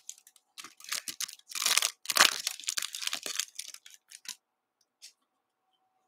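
A trading card pack's wrapper being torn open and crinkled by hand: a run of short crackling rips for about four seconds, then one last crackle about five seconds in.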